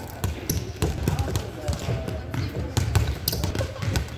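Several basketballs bouncing on a hardwood gym floor as children dribble, making many uneven, overlapping thuds.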